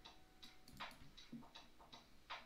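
Faint, irregular clicks, about three a second, from operating a computer's input devices.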